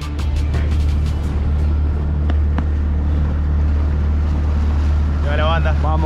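Outboard motor running steadily at cruising speed with a constant low drone, mixed with the rush of water and wind as the boat moves. A man's voice comes in near the end.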